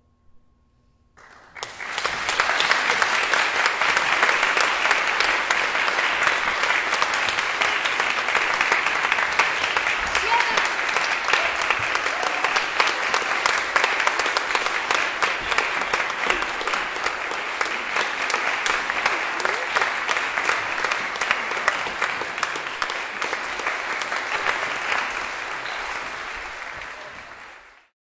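Audience applauding, starting suddenly about a second and a half in, holding steady, then fading out near the end.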